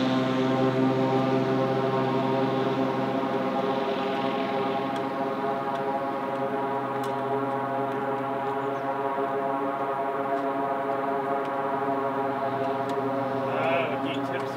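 Floatplane's piston engine and propeller at full takeoff power: a steady drone at one unchanging pitch, easing slightly as the plane runs away across the water.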